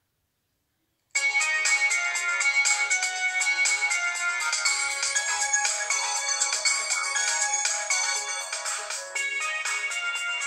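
Samsung Galaxy Ace 3 GT-S7270 smartphone playing its musical ringtone through its loudspeaker for an incoming call, which a fake-call app has triggered. The ringtone starts suddenly about a second in and plays on with a steady beat.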